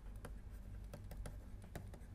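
A few faint, irregular light clicks of a stylus tapping on a pen tablet, over a low steady hum.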